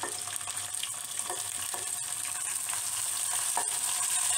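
Hot desi ghee sizzling in a kadhai as mashed boiled potato is tipped into it, a steady frying hiss with scattered small crackles.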